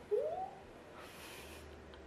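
A woman's short rising hum, one pitch sliding upward for under half a second near the start, followed by a faint brushing rustle as the fluffy earmuffs are fitted over her ears.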